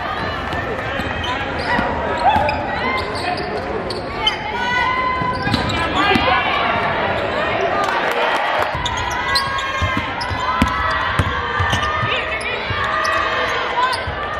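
Live game sound in a basketball arena: a basketball being dribbled on the hardwood court, with short sharp bounces, under players', coaches' and spectators' voices calling out, echoing in the large gym.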